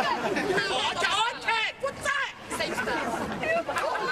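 People talking over a crowd's chatter.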